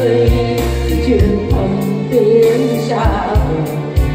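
A woman singing a Vietnamese ballad into a microphone through a PA, accompanied by an electronic keyboard playing sustained bass and chords over a steady drum beat.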